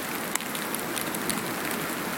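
Steady hiss of outdoor background noise, with one faint click about a third of a second in.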